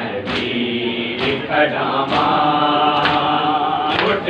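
A crowd of men chanting a noha in unison, with collective open-hand chest-beating (matam) landing together as sharp slaps about once a second.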